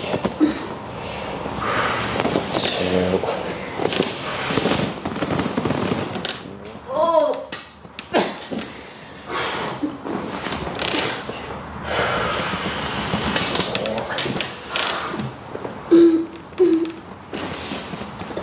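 Hands rubbing and pressing into a bare back during deep-tissue massage, with irregular rustling throughout. Short murmured vocal sounds break in: a brief rising one about seven seconds in and two short hums near the end.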